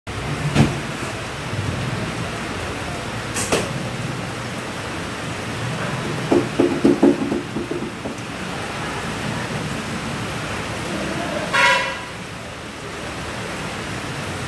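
Recurve bow shot: the string is released from full draw with a sharp snap about half a second in, with another sharp knock a few seconds later, over a steady background hum. A quick run of low knocks comes midway, and a brief honk-like tone sounds near the end.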